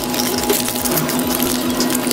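Close-up chewing of a nori-salt fried chicken nugget: a quick run of small wet clicks and squishes, over a steady low hum.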